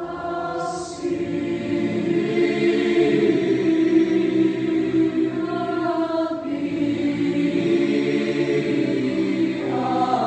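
Mixed high-school choir singing sustained chords, swelling in volume over the first couple of seconds and then holding steady.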